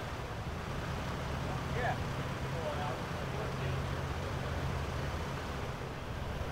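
Steady low hum of parked emergency vehicles' engines idling, with faint distant voices about two and three seconds in.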